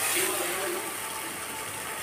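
Steady hiss of masala paste frying in an iron kadhai on a gas stove, stirred with a metal spatula. A faint voice can be heard in the background.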